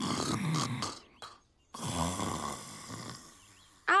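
A man's comic, feigned snoring: two long snores, the first in the opening second and the second from about two to three seconds in.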